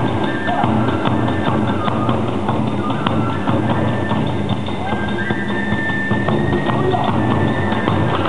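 Live Hiroshima kagura ensemble playing fast dance music: a bamboo flute holding high notes, stepping up about five seconds in, over rapid drum beats and small hand-cymbal clashes.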